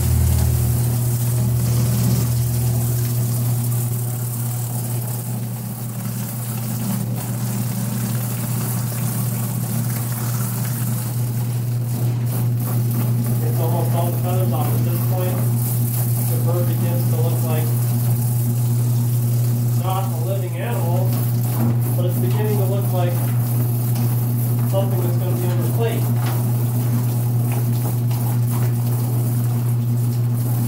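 Drum-type chicken feather plucker running: its electric motor and belt drive give a steady hum while the spinning drum strips feathers from a scalded bird held against it.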